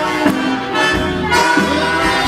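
Jazz big band playing live, horns sustaining chords over a rhythm section with a steady beat, at the start of a sing-along spiritual.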